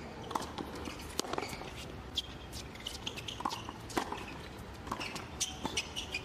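Tennis rally on a hard court: a series of sharp racket-on-ball hits and ball bounces, irregularly spaced.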